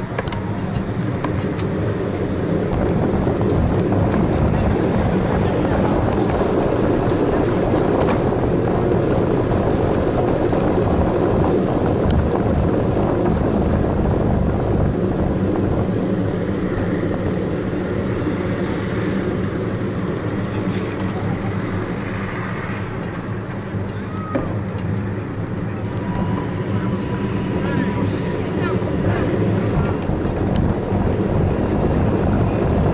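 Steady rush of wind on the microphone and rumble of tyres on the road from a camera mounted on a moving bicycle, dipping a little about three-quarters of the way through.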